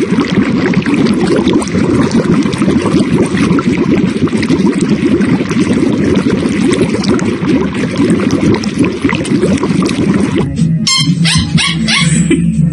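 A husky splashing water in a steel bowl with its front paw and muzzle, a dense, continuous run of splashes. Near the end it gives way to music with a beat.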